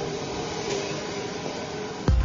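Steady whooshing noise with a faint even hum: a fan or ventilation-type machine running.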